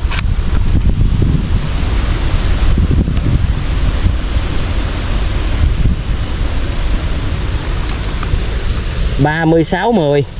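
Wind buffeting the microphone: a loud, steady, rumbling rush of wind noise, heaviest in the low end.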